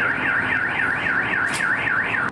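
Car alarm sounding: a loud electronic tone sweeping up and down over and over, about four times a second.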